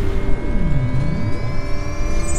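Sci-fi warp-jump sound effect: a loud, deep rumble under a cluster of steady whining tones, one of them dipping down and sweeping back up in the middle, while the higher tones slowly rise in pitch.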